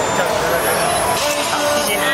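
Music playing, with people's voices mixed in.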